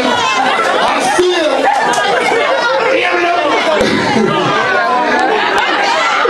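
Many voices talking over one another: steady, loud crowd chatter.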